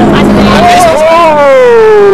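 Aerobatic biplane's propeller engine, heard as a loud pitched drone. About a second in it peaks and then falls steadily in pitch while the plane climbs and rolls.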